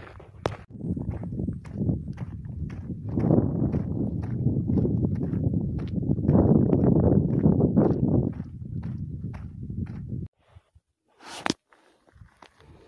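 Footsteps on a gravel dirt track under heavy rumbling noise on the hand-held camera's microphone, loudest in the middle. The sound cuts off abruptly near the end.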